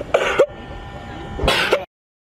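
Sea lions hauled out close by giving two short, harsh, throaty calls about a second apart. The sound cuts off suddenly just before the end.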